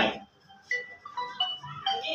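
A man's drawn-out word ends at the very start, then faint background music follows: short, steady notes stepping between different pitches.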